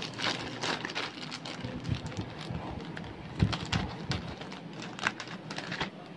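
Plastic courier mailer bag rustling and crinkling as it is handled, with irregular small crackles and taps.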